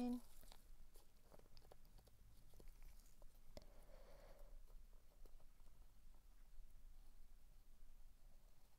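Near silence with faint scattered ticks and rustles from a wooden stir stick and gloved fingers pressing a thin silver sheet into a mould.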